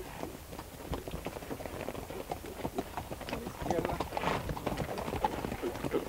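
Hoofbeats of several ridden horses on a wet dirt track: a quick, uneven patter of hoof strikes.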